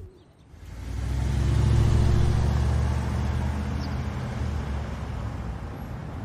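Car engine sound effect of a car pulling away. The engine comes in about half a second in, is loudest around two seconds in, then slowly fades as the car drives off.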